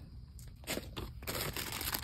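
Thin plastic packaging crinkling as it is handled, faint at first and busier from about halfway through.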